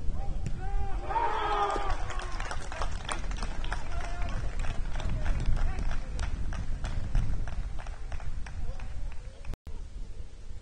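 Voices calling out during a football match, with a shout about a second in. Under it runs a steady low rumble and a string of light clicks, and the sound drops out for a moment near the end.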